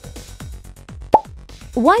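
Electronic background music with a steady kick-drum beat, about four hits a second. About a second in comes a single short, sharp pop sound effect, the loudest moment, as the quiz slide changes; a voice starts speaking near the end.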